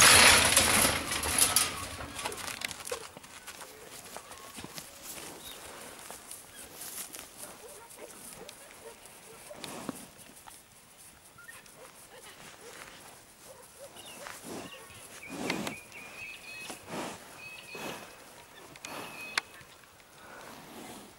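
Metal gates of a horse starting barrier springing open with a loud clang and rattle right at the start, the loudest sound, dying away over about two seconds; afterwards only quieter scattered outdoor sounds.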